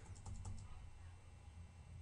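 Faint taps of a computer keyboard's arrow key, a few quick presses near the start, over a low steady hum.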